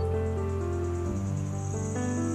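Soft instrumental music of sustained chords that shift about a second in, with an insect trilling over it in a high, rapidly pulsing buzz.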